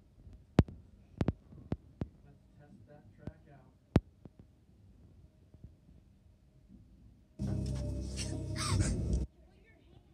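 A glass marble clicking and clacking as it drops down a wooden craft-stick track, a handful of sharp separate clicks over the first four seconds. About seven seconds in comes a loud, abrupt burst of close noise lasting about two seconds.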